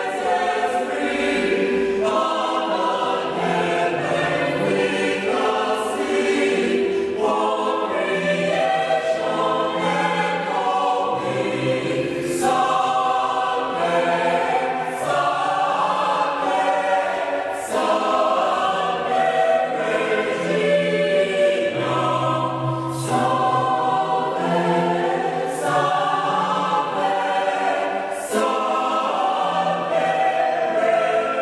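A church choir singing a hymn, several voices together in a steady, unbroken line of phrases.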